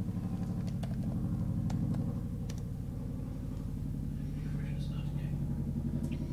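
A few faint computer keyboard key clicks over a steady low hum.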